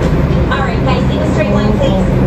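A steady low hum, with a faint voice talking in the background from about half a second in.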